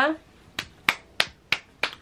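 A person snapping their fingers about five times in a steady rhythm, roughly three snaps a second.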